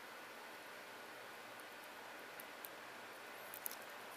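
Faint steady hiss of room tone, with a few faint small clicks and rustles about two and a half seconds in and again near the end, from hands handling a plastic action figure.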